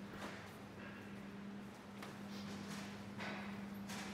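A steady low hum, with a few faint knocks over it.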